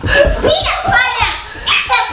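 Young children shouting and squealing excitedly in high voices, several loud rising cries one after another.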